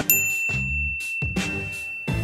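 A single bright ding struck right at the start, ringing on as one long, steady high tone. Under it plays background music with a regular beat and bass notes.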